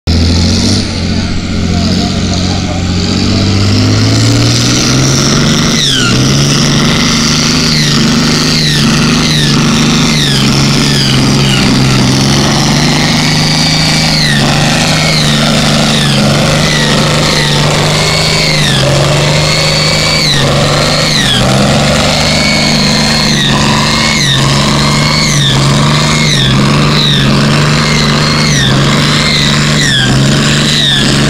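Farm tractor's diesel engine at full throttle under heavy load, pulling a weight-transfer sled. It revs up over the first few seconds, then holds high and steady through the pull.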